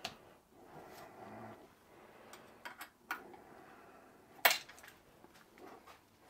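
Faint metal clicks and clinks of an Allen key working the socket cap screws of a jaw-type shaft coupling, a handful of separate ticks with the sharpest one about four and a half seconds in.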